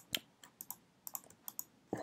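Computer keyboard keys and mouse buttons clicking, about ten short clicks at irregular intervals.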